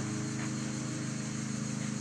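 Steady low mechanical hum, several even tones held unchanged, as from a motor or fan running nearby.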